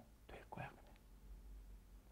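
Near silence: room tone with a faint low hum, and a brief soft murmur of a man's voice about half a second in.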